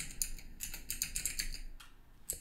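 Typing on a computer keyboard: a quick run of key clicks that pauses near the end.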